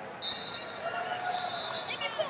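A wrestling referee's whistle blown with one long steady high note, then a shorter, louder one near the end, over the chatter and shoe squeaks of a busy wrestling hall.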